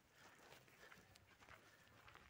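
Near silence, with faint, scattered footsteps of someone walking.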